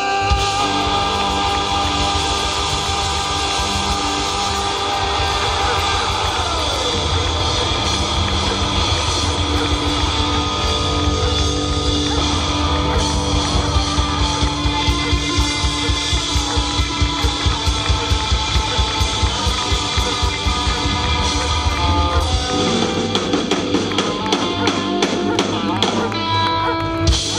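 Live rock band playing an instrumental passage on electric guitars, bass and drum kit. About six seconds in, a held note slides down in pitch. From about halfway through, a fast pulsing rhythm drives the music, and near the end the low bass drops away.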